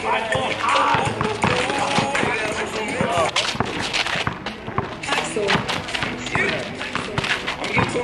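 A basketball bouncing on an outdoor asphalt court, heard as repeated sharp knocks with players' steps, under a person's voice that runs throughout.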